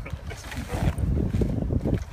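Low, uneven rumble of wind buffeting and handling noise on the camera microphone, louder from about half a second in.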